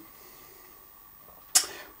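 Quiet room tone, then about one and a half seconds in a short, sharp intake of breath before speaking.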